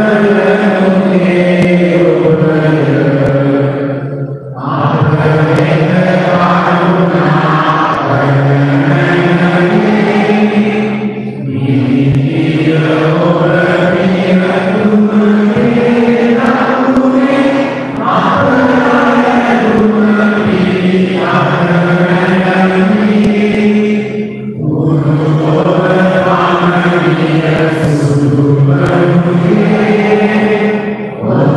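A male voice chanting a liturgical prayer in long, slowly gliding sung phrases, pausing for breath about every six to seven seconds.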